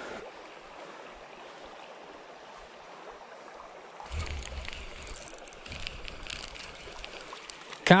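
Shallow creek water running over stones, a steady rush. From about halfway through, low rumbling and scattered clicks from a hand handling the camera close to the microphone join in.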